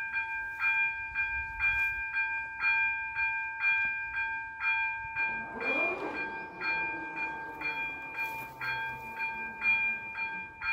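Level-crossing warning bells (ZV-02 electronic bells) ringing in a steady, even pattern of about two strikes a second, signalling that a train is approaching. About halfway through, a whine rises and then falls in pitch as the PZA-100 barrier arms swing down.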